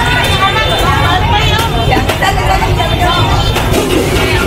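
People talking at a busy market stall: several voices over a low, steady rumble.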